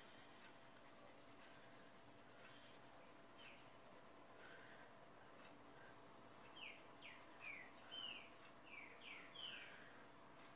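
Near silence with the faint scratch of a colored pencil shading paper in quick up-and-down strokes, a run of about seven strokes in the second half.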